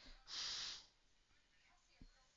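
A person's short, sharp breath out through the nose into a close microphone, a snort lasting about half a second.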